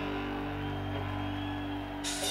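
Electric guitar holding a sustained chord through the amplifiers at a live rock concert, ringing steadily without new strikes.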